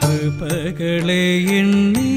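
A man singing a Malayalam Christian devotional song over instrumental accompaniment with light percussion strikes. About half a second in, a quick ornamental waver in the voice, then a long held note that steps slightly higher near the end.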